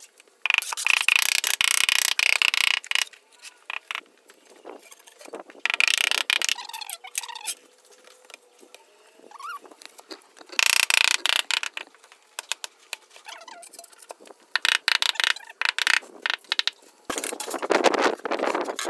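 Large porcelain floor tiles being set: gritty scraping and rubbing in several bursts of a second or two, with short squeaks, as a tile is slid and worked into place.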